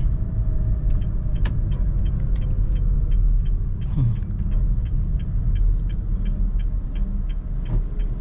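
Honda Brio's engine and road noise rumbling steadily inside the cabin while driving slowly, with the turn-signal indicator ticking about three times a second from about two seconds in.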